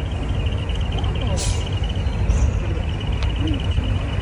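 Diesel engine of a vintage coach bus running at low speed with a deep rumble as the bus creeps forward, with a short hiss about a second and a half in.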